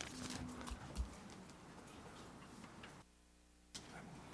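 Faint handling noise on a desk picked up by a desk microphone: scattered light clicks and knocks, with one louder knock about a second in, as paper sign-up cards and a wooden box are handled. The sound cuts out for most of a second about three seconds in.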